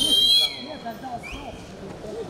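Wrestling referee's whistle blown in one sharp, loud, high blast of about half a second, calling a stop to the action, followed about a second later by a short, fainter chirp.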